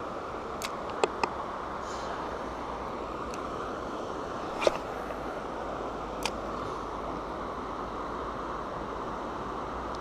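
A steady outdoor rush of flowing river water and breeze. Over it come a few short sharp clicks from a spinning rod and reel being handled during casting and retrieving.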